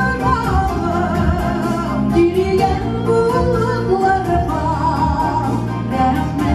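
Three women singing a Tatar song together into microphones, their voices with a wide vibrato, over amplified accompaniment with a steady beat.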